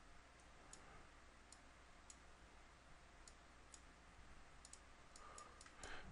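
Near silence with about a dozen faint, scattered clicks from a computer mouse and keyboard, more of them toward the end, over a low steady hum.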